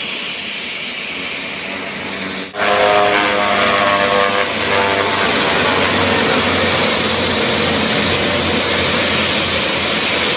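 Twin-turboprop airplane's engines running loudly on the runway, a steady roar. A cut about two and a half seconds in brings it louder, with a whining engine tone for a couple of seconds before it settles into an even roar.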